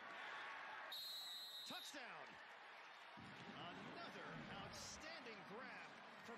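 Faint game-broadcast field sound: indistinct voices over steady crowd and stadium noise, with a steady high whistle lasting about a second, about a second in.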